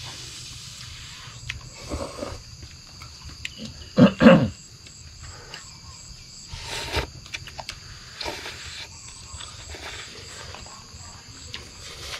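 People slurping instant noodles from paper cups, in several short sudden slurps, the loudest a double slurp about four seconds in and another near seven seconds. A steady high insect hum runs underneath.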